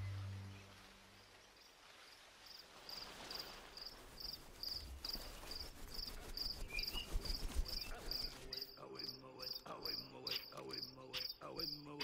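Jungle ambience on a film soundtrack: an insect chirps steadily about twice a second as the music fades out in the first second, and from about two-thirds of the way in, many bird calls join it.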